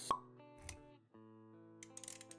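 Sound effects of an animated intro over music: a sharp pop just after the start and a short low thump under a second in, followed by sustained musical notes with a few clicks near the end.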